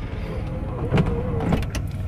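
Van's engine running, heard inside the cabin as a steady low hum, with a few faint clicks about a second in and near the end.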